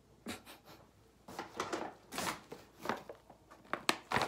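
Brown paper meal-kit bag rustling and crinkling in short irregular bursts as it is handled and lifted.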